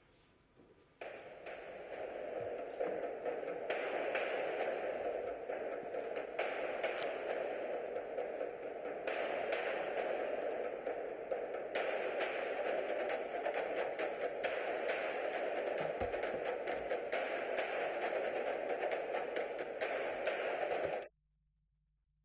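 Soundtrack of a short film played over the lecture hall's speakers: a steady noise with many sharp, irregular clicks and taps. It starts about a second in and cuts off suddenly near the end.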